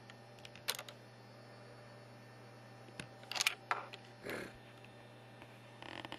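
Short sharp clicks and taps of fingers pressing the buttons and screen of a Nokia N900 handset: a couple about a second in and a quick cluster about three seconds in, over a steady low hum.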